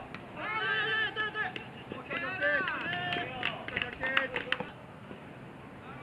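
Players shouting loud, drawn-out calls across a baseball field during a play, with a few sharp short clicks mixed in during the second half of the calls.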